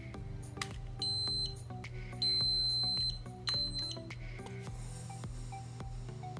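Three high electronic beeps from the Cheerson CX-10A's remote transmitter as it is readied and bound for a test flight: a short one about a second in, a longer one near the middle, then a short one. Background music plays underneath.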